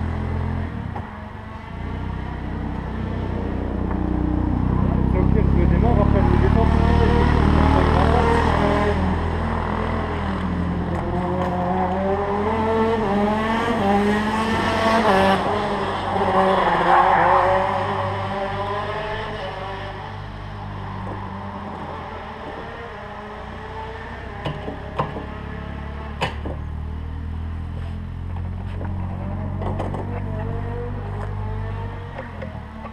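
125 cc two-stroke shifter kart engines running, with a steady low drone throughout. In the first half, kart engines rev up and down in pitch and grow loud, then fade; a few sharp clicks come near the end.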